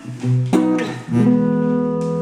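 Small acoustic guitar being strummed: two chords about half a second apart, the second left ringing on.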